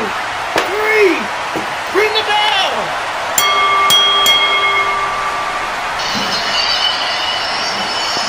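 Wrestling ring bell struck three times in quick succession, then ringing on for about two seconds, signalling the end of the match after the pinfall. A steady hiss follows from about six seconds in.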